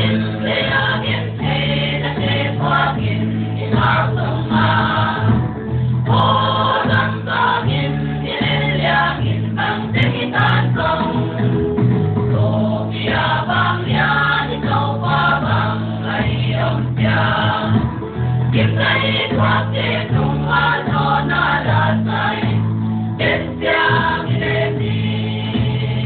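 A choir singing a gospel song over instrumental backing with a steady bass line.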